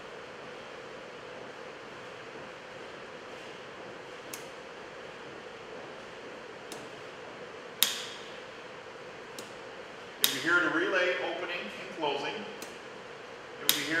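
Relay contacts clicking as a thermostat cycles the relay on and off to switch a light bulb: several sharp clicks a few seconds apart, the loudest in the second half, over a steady low hiss.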